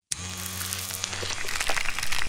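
Electric hair clipper sound effect: a steady motor buzz overlaid with crackling, crunching clicks as the blade shears through clusters, getting louder near the end.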